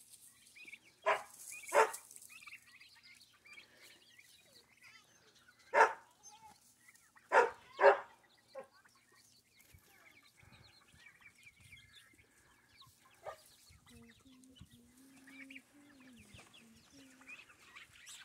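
Backyard chickens clucking: a handful of short, loud calls, two about a second in, one around six seconds and two close together near eight seconds, with soft clucking in between.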